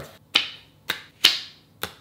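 Four sharp snaps of a playing card being flicked off a fingernail from the top of a deck, spread unevenly over two seconds. The third snap is the loudest.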